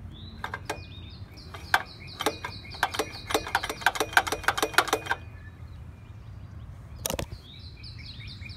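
Rapid run of sharp clicks and knocks, several a second for about five seconds, from tugging the recoil pull-start of a StormCat two-stroke generator whose engine has seized and will not turn over. Birds chirp throughout, and a single louder knock comes near the end.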